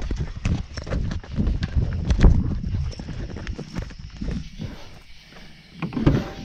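Hurried footsteps: a quick, irregular run of footfalls and knocks, with the rustle and thumps of clothing and gear as people move fast.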